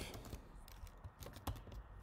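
Typing on a computer keyboard: a handful of faint, separate keystrokes at an uneven pace.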